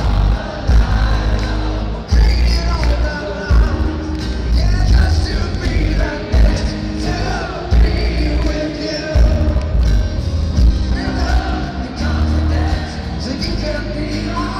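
A rock band playing live with singing: lead vocal over acoustic guitar, electric bass and drums, with a heavy low end pulsing every second or two.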